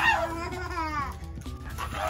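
A baby's high, wavering squeal lasting about a second, over background music.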